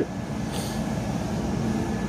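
Steady low background rumble, with a brief faint hiss about half a second in.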